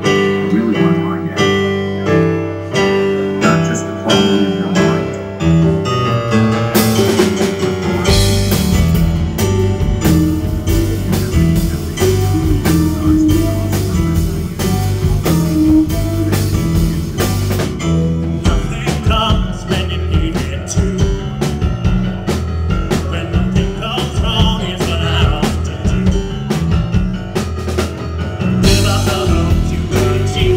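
Live alternative rock band playing: repeated keyboard chords alone at first, then drums and bass guitar come in about seven seconds in and the full band plays on, the cymbals easing off mid-way and returning near the end.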